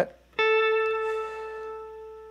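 A single note picked on a Fender Stratocaster electric guitar through a Mojotone Tweed Pro tube amp, with a little added reverb. It comes in about half a second in, holds one steady pitch and rings on, slowly fading.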